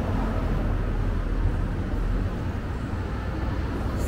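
Outdoor street noise: a steady low rumble with no distinct events.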